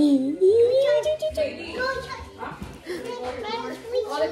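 Children's voices talking in high-pitched, sing-song tones.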